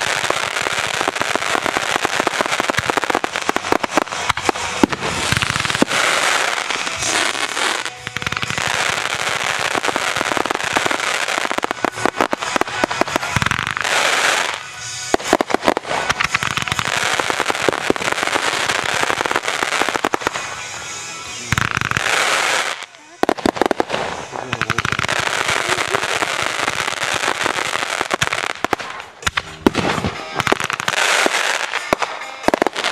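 Fireworks bursting in a rapid, almost continuous barrage of bangs and crackling, with short lulls about eight, fifteen and twenty-three seconds in.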